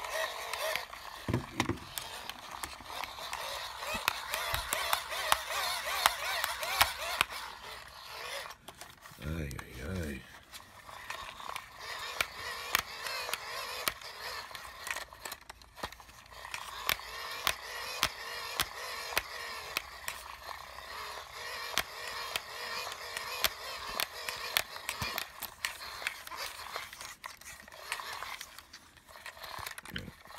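The hand crank of an Ideation GoPower crank-charge flashlight being wound steadily. Its small generator gearing whirs, with a rapid run of plastic clicks from the spinning handle.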